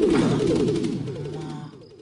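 Comic sound effect from a film soundtrack: a rapid run of falling, warbling tones that fades out over under two seconds.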